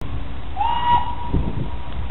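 Steam locomotive whistle blowing once for about a second and a half, sliding up in pitch as it opens and then holding one steady note, over a steady background rumble.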